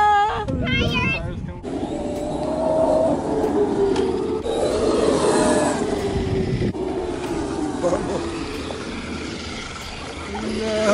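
Traxxas X-Maxx RC monster truck's brushless electric motor whining as it drives over grass, its pitch falling and rising with speed, over tyre and drivetrain noise. A child's voice is briefly heard at the start.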